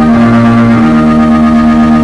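Organ holding a sustained chord, with a brief change in the bass note near the start.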